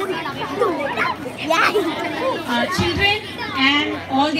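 Many children's voices chattering at once, overlapping and unclear.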